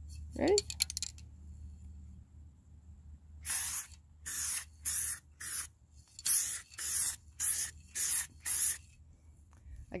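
Aerosol can of primer spray paint fired through a clip-on trigger handle in about nine short hissing bursts, each under half a second, beginning about three and a half seconds in.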